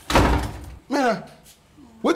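A door banging as it is swung, a dull thud with a noisy tail lasting under a second, followed by a short spoken exclamation.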